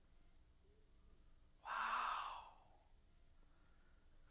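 A man's single heavy sigh, a breathy exhale close into a headset microphone, lasting about a second from about a second and a half in; otherwise faint room tone.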